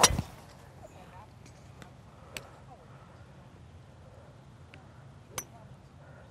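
A PXG 0811X driver striking a golf ball off a range mat: one sharp, loud crack right at the start. Two much fainter sharp clicks follow, about two and a half and five and a half seconds in.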